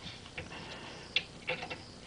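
A few faint, irregular metallic clicks of an Allen key being fitted and turned on the steel jacking screw of the bevel box mounting cradle.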